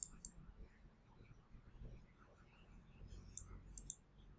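A few faint taps of a stylus on a tablet screen in near silence: a couple right at the start and a short cluster near the end.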